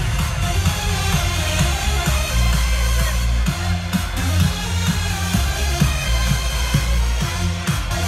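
Electronic dance music from a DJ set played loud over a stage sound system, with a heavy bass line and a steady kick drum.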